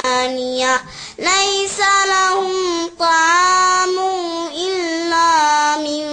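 A young girl's voice reciting the Qur'an in melodic tajweed style, in long held notes with ornamented turns of pitch. Short breath pauses between phrases come about a second in and again about three seconds in.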